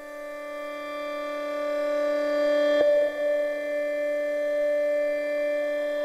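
Ambient synthesizer music: a sustained pad chord swelling in over the first few seconds, with a brief break in the tone about three seconds in, then holding steady.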